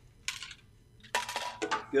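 A man drinking from a water bottle: a short breath just after the start, then a brief clattering rustle about a second in as the bottle is handled and lowered.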